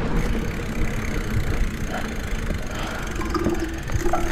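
Wind rushing over the microphone and the rumble and rattle of a mountain bike rolling over a dirt fire road, with a short steady tone near the end.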